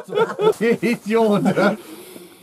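Speech: a person talking in a chuckling voice, trailing off near the end.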